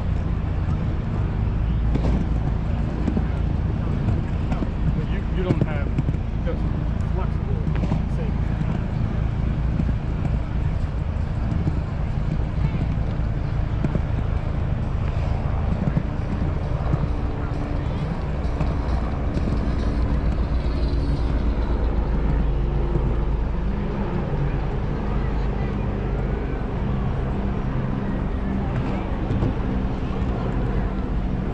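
Penny board wheels rolling over the wooden boardwalk planks: a steady low rumble, with voices of people nearby.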